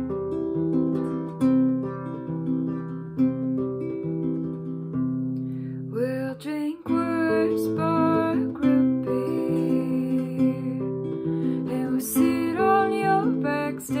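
Classical guitar played in a steady chord accompaniment. A woman's singing voice comes in over it about six seconds in.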